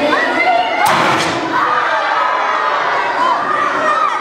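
A single thump just under a second in, among a crowd of children shouting and cheering with rising and falling voices.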